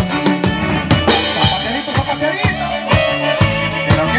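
Live regional Mexican band music led by an electronic keyboard over a steady drum beat, with kick hits about twice a second and a bright cymbal-like crash about a second in.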